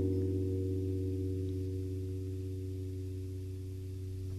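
Soft music with no singing: a held guitar chord ringing on and slowly fading.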